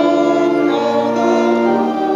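Congregation singing with organ accompaniment, the organ holding long steady chords under the voices.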